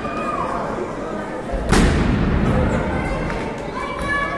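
A wrestler slammed down onto the lucha libre ring's mat: one loud thud a little before halfway, over crowd voices and shouts.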